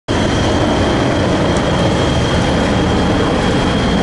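Heavy wrecker's diesel engine running steadily with a deep, even rumble, and a thin high-pitched whine held over it.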